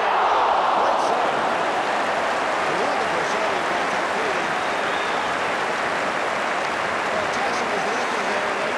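Large football stadium crowd shouting and cheering. The noise rises suddenly at the start as a free kick is swung into the goalmouth, then holds as a steady, loud din.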